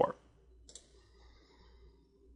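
A single faint computer mouse click about two-thirds of a second in, against quiet room tone.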